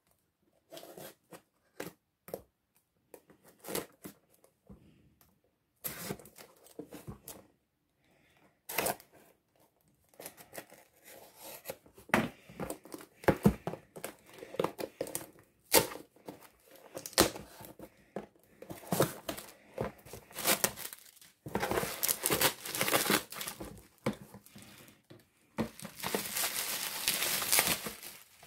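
A cardboard shipping box being opened by hand: scattered taps and scrapes at first, then louder stretches of tearing about two-thirds of the way through. Plastic bubble wrap crinkles near the end as the packing comes out.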